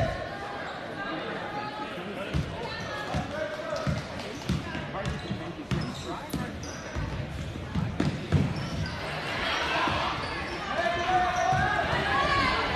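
A basketball bouncing on a hardwood gym floor as players dribble, with spectators' voices and shouts in a large gym, growing louder near the end.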